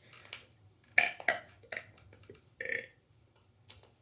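A child burping: two short burps about a second in, then another a little before three seconds.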